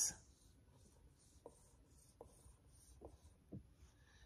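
Faint dry-erase marker on a whiteboard: a run of short, soft scratchy strokes, about three a second, as a zigzag line is drawn. A few light clicks are mixed in.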